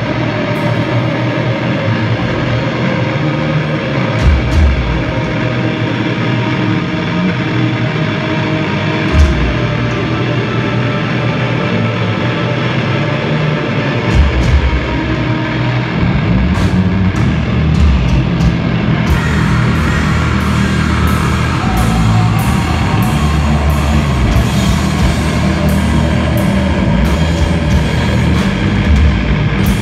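Sludge/doom metal band playing live, loud: a slow, sustained distorted guitar wall broken by a few heavy low hits, then about halfway through the full band comes in with drums and repeated cymbal crashes.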